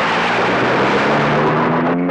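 Heavy rain falling steadily, a loud even hiss, with low steady tones running underneath.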